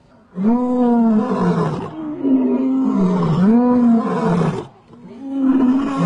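Male African lions roaring: a series of long, loud roars, each rising and then falling in pitch, with a short break about five seconds in before the next roar.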